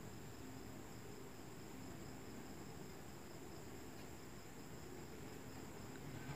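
Faint steady room tone: a low hum with a thin, high, unbroken whine above it, and no distinct cutting or handling sounds.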